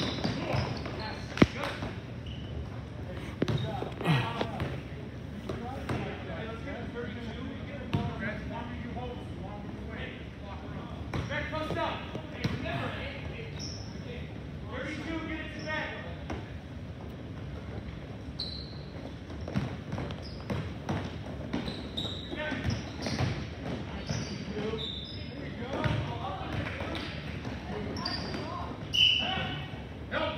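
Basketball bouncing on a hardwood gym floor during play, with a sharp bang about a second and a half in, scattered short high sneaker squeaks, and voices around the court.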